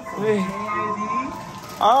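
Voices exclaiming and talking over background music, with a loud exclamation near the end.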